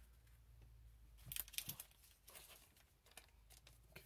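Faint rustle and crinkle of trading cards being handled and set down, with a brief flurry of crinkling about a second and a half in.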